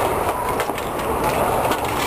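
Inline skate wheels rolling on a concrete rink floor: a steady rolling clatter with scattered clicks.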